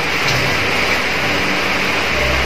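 Steady, even hiss of room noise with no words, like a fan or air conditioner running.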